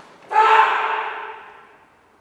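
A karateka's kiai: one loud, sharp shout about a third of a second in, ringing on in the gym's echo and fading over more than a second. Just before it, a faint snap as the kick is thrown.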